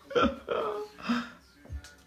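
A man laughing in a few short bursts, each breaking off quickly.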